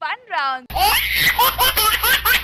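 A woman's voice rises and falls briefly. About 0.7 s in, a loud segment-title jingle cuts in: a fast pulsing beat over a deep bass, with laughter-like voices on top.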